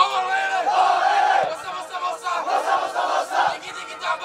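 A team of young footballers shouting together in a huddle for a celebration chant. It starts loud and sudden with a long held shout lasting about a second and a half, then goes on in shorter, uneven shouts.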